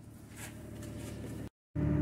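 Faint rustle of the camera being moved, then, after a brief dropout at an edit near the end, a steady low hum.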